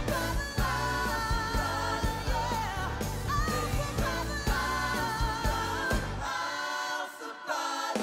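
Live rock band with a woman's voice singing long, wavering lines over bass and drums. About six seconds in, the bass and drums drop out, leaving the voices on their own.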